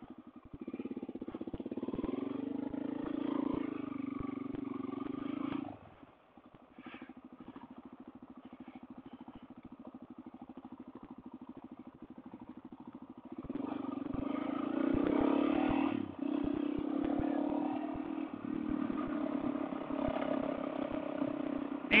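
Suzuki DR-Z400 single-cylinder four-stroke engine pulling away from a stop and riding on a gravel road. It runs harder for the first six seconds, then drops off the throttle suddenly and runs quieter, and opens up again about halfway through.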